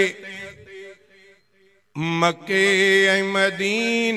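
A man singing a Sindhi naat, a devotional song in praise of the Prophet. His voice trails off in the first second, there is a gap of about a second, and then he comes back in holding a long, steady note.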